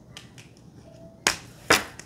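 Two sharp snaps about half a second apart, a little over a second in, after a few faint taps.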